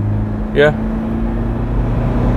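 Toyota Fortuner's 2KD four-cylinder turbodiesel with a variable-nozzle turbo, heard from inside the cabin on a test drive as a steady drone under acceleration. Its pitch edges up near the end.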